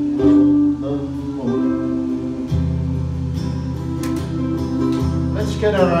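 Live folk music: acoustic guitars play an instrumental passage between sung verses of an Irish ballad, over steady held notes.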